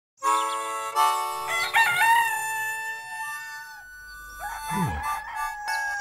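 A rooster crowing: one long, drawn-out cock-a-doodle-doo lasting over three seconds, wavering in pitch partway through. A quieter sound follows with a low pitch sliding down.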